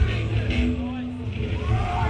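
Live hardcore punk band ending a song: the full band drops out, leaving a steady amplifier hum and a short held note, with a voice shouting near the end.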